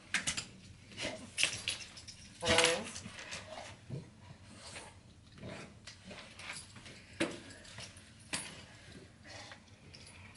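A dog's leash and harness being handled and clipped on: metal clips and buckles clinking and rattling in scattered short taps, with a brief vocal sound about two and a half seconds in.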